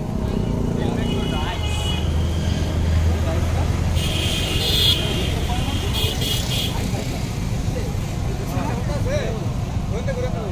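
A motor vehicle engine runs steadily, with several short horn toots, the longest about four seconds in, over people talking.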